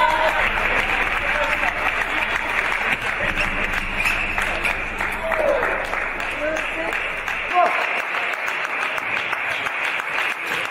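Spectators applauding steadily after a table tennis point, with a few short shouts among the clapping.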